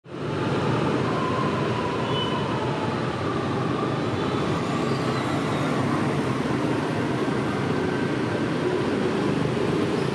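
Steady city street traffic, with motorbikes and cars passing in a continuous hum of engines and tyres.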